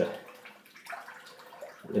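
Tap water running into a sink with light splashing, as a safety razor is rinsed of shaving soap between strokes.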